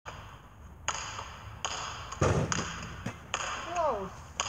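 Basketball bouncing on an outdoor asphalt court, about five bounces, each with a sharp ringing ping, and a heavier thud a little past two seconds in. A short voice sound comes in near the end.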